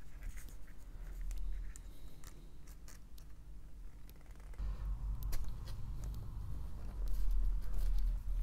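Small metal clicks and scrapes of pliers squeezing the strain-relief clamp of a DIN connector plug shut around its cable. Scattered sharp ticks, with a low rumble of handling from about halfway.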